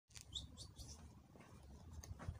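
Faint bird chirps: a few short, high chirps in the first second, over a faint low rumble.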